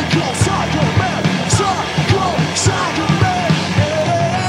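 Live punk rock band playing loud and fast: drums with cymbal crashes about once a second, electric guitar and bass, with vocals over them.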